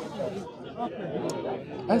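Background chatter: several people talking at once, their voices overlapping at a moderate level. One man's voice comes in louder right at the end.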